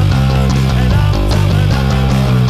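Punk rock band track with electric guitars and drums, and an electric bass played along with it: a Gould Stormbird bass recorded through a Zoom B2 effects pedal. The bass notes change in a steady driving rhythm under regular drum hits.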